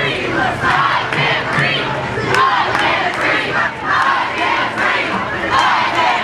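A crowd of protesters marching and shouting together, many raised voices overlapping without a break.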